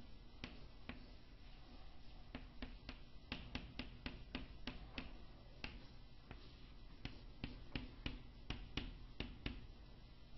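Quiet, irregular sharp clicks and taps, about two or three a second, from a pen striking a writing surface while drawing.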